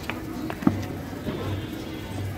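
Street ambience with faint distant voices and faint background music, and a few short sharp clicks, the sharpest a little over half a second in.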